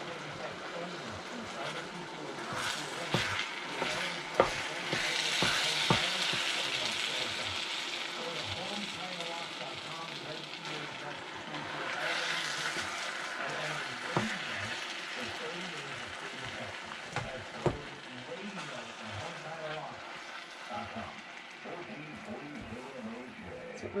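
Black glutinous rice being stirred into simmering coconut milk and sugar syrup with a wooden spoon: a steady sizzling bubble that swells twice as the rice is turned, with a few sharp knocks of the spoon against the pan.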